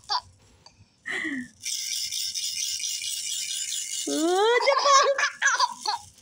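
A baby's toy rattle is shaken steadily for about two and a half seconds, a bright, dense rattling. It is followed by a burst of laughter near the end.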